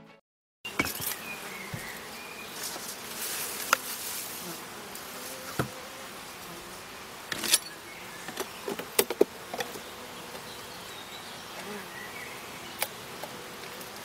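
Honeybees buzzing steadily around an opened Mini Plus hive, with scattered sharp knocks and clicks as the polystyrene hive lid and boxes are handled and lifted apart.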